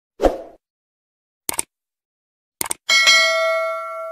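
Subscribe-animation sound effects: a short thud, a single mouse click about a second and a half in, a quick double click, then a notification-style bell ding that rings on and slowly fades.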